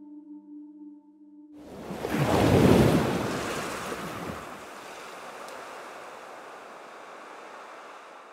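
Trailer sound design: a held drone stops about one and a half seconds in, then a rushing swell with a deep rumble builds to a peak near three seconds. It settles into a long, steady hiss.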